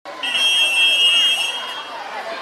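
A whistle blown in one long, steady blast of about a second and a half, high-pitched, with crowd voices behind it.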